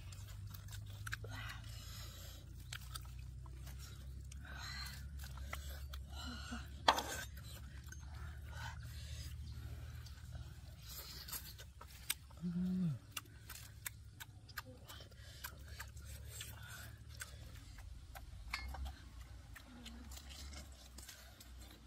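A knife cutting and scraping through roasted meat on a clay plate: scattered small clicks and scrapes of the blade, with one sharp knock about a third of the way in. A short low hum comes a little past halfway, and chewing is heard near the end.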